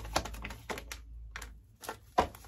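A tarot deck being shuffled by hand: a run of light, quick card clicks, with a brief lull about halfway through.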